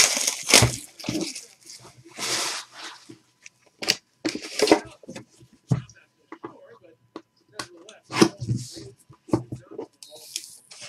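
Shrink-wrap plastic tearing and crinkling, mixed with scrapes and knocks of a cardboard trading-card box being unwrapped and opened. The sounds come in short, irregular bursts.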